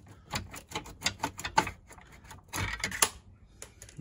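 Irregular clicks and ticks from a hand screwdriver working screws out of the plastic dashboard frame, with a denser, louder clatter of clicks about three seconds in.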